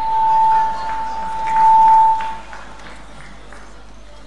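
Public-address microphone feedback: a single steady whistling tone that swells twice, loudest just before it cuts off about two and a half seconds in.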